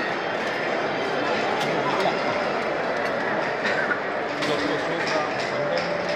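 Steady crowd chatter in a busy hall, with scattered light metallic clinks and rattles from a full suit of steel plate armour as its wearer walks.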